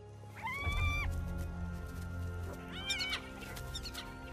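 Spotted hyena cub whining twice in high pitched calls: the first, rising then held, starts about half a second in and lasts most of a second; the second is shorter and wavering, near the three-second mark. Music with held low notes plays underneath.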